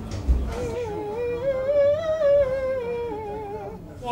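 A singer's voice vocalizing with vibrato on one long line that rises slowly and falls back, with a brief low bump just before it begins.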